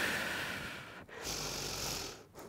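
A woman's audible breathing: two long breaths one after the other, the second starting about a second in.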